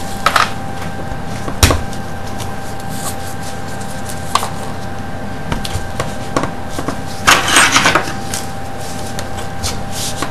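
Gloved hands handling a plastic bottle and measuring jug: a few sharp clicks and knocks, the loudest nearly two seconds in, and a rustling scrape of about a second near three quarters of the way through, over a steady faint hum.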